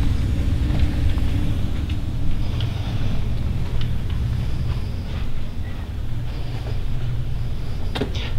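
A steady low rumble with a few faint taps and clicks.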